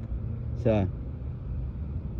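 A steady low rumble of outdoor background noise, with a man's single short spoken word about half a second in.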